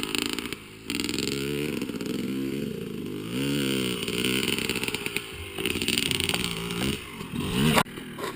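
Motocross dirt bike engines revving, their pitch rising and falling several times as the bikes accelerate and ease off.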